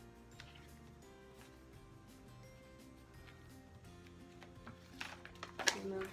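Soft background music with steady held notes. About five seconds in, a short run of crackling clicks from the paper template and the pink vinyl sheet being handled.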